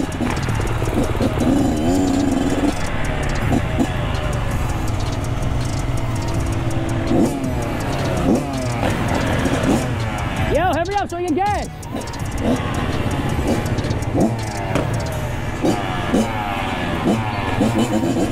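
Kawasaki KX112 two-stroke dirt bike engines running and idling, with revs rising and falling, loudest about eleven seconds in.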